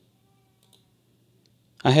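Two faint computer mouse clicks, about a second apart, in an otherwise quiet room; a man's voice starts near the end.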